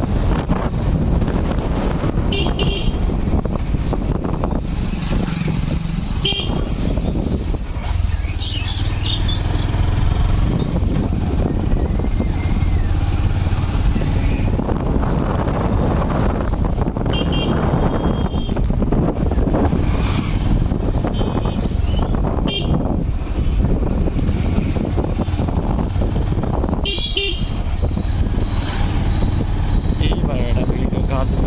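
Steady low rumble of a motor vehicle, such as a motorcycle, riding along, with wind on the microphone. Several short, high-pitched toots break in, near the start and again near the end.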